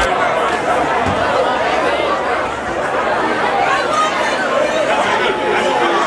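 Loud crowd chatter: many voices talking and calling out at once, overlapping, while the dance music's bass has dropped out.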